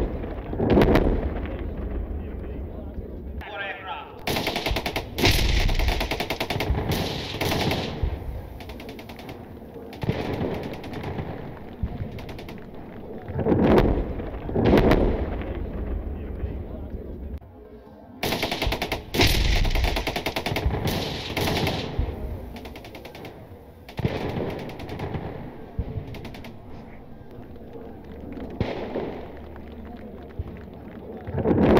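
Two long bursts of rapid automatic gunfire, one about five seconds in and another just past the middle, with deep booming rumbles between them, as in a live-fire air-power demonstration.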